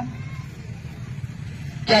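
A pause in a man's amplified speech, leaving a steady low background rumble. A word ends at the start and speech resumes just before the end.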